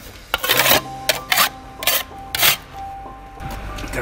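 Metal shovel scraping and scooping coal lumps and ash, five quick strokes in the first two and a half seconds, as debris is cleared out during coal mill maintenance.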